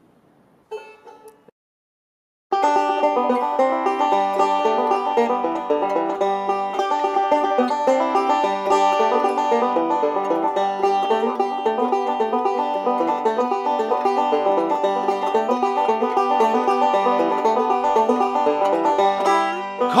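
Resonator banjo playing a tune in chords with fast, rapidly repeated picking. A brief strum about a second in, then the tune starts about two and a half seconds in and runs steadily.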